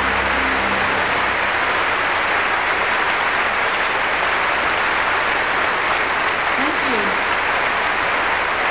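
Large concert audience applauding steadily.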